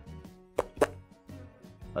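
Two quick plopping pops made with the mouth, a vocal sound effect imitating a big knife chopping into hardwood, over faint background music.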